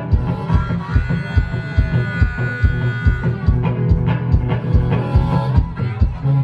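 Live solo acoustic guitar boogie played hard over a steady low stomped beat, about three beats a second. A long held high note sounds through the middle.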